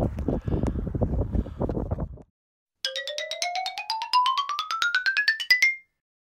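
Wind buffeting the microphone for about two seconds, cut off abruptly. After a short gap comes a quick run of bright chime-like notes, about eight a second, climbing steadily in pitch for about three seconds: a rising xylophone-style transition sound effect.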